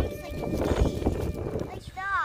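Wind buffeting the microphone: an uneven low rumble with irregular thumps.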